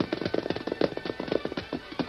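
Radio sound-effect horse hoofbeats: a rapid, irregular run of clopping knocks as a horse is reined in to a halt.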